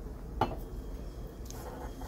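A metal spoon clinks once against a plastic mixing container of batter about half a second in, with a fainter tick later, over a low steady hum.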